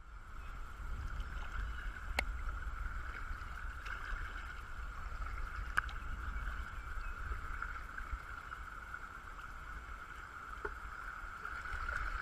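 Steady rush of river current flowing around a kayak drifting toward a riffle, over a low rumble. A few sharp clicks are heard, about two, six and eleven seconds in.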